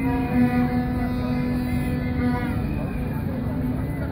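A long, steady pitched tone with a rich set of overtones, held for about two and a half seconds and then fading, over the steady murmur of an outdoor crowd.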